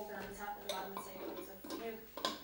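Breakfast tableware being handled: cups, plates and cutlery clinking and knocking on a table, with voices talking over it.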